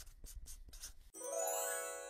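Intro title sound effects: a quick run of scratchy pen-on-paper writing strokes for about the first second, then a bright, shimmering chime that rings out and slowly fades.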